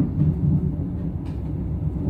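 Steady low rumble of a moving passenger train heard from inside the carriage, with a couple of faint clicks about a quarter second in and again past the middle.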